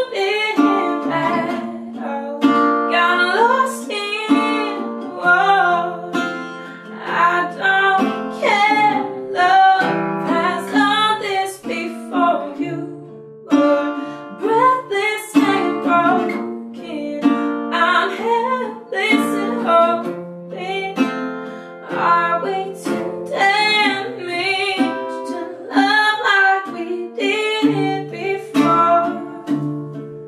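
A woman singing a slow song, accompanied by a small-bodied acoustic guitar.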